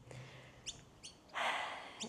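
A small bird chirps twice in quick rising notes, then a short rustling noise about half a second long near the end, the loudest sound in the gap.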